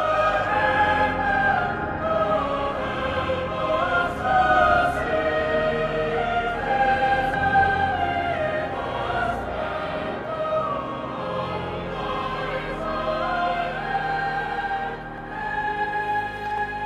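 Classical choral music: several voices singing slow melodic lines, holding long notes that move in steps.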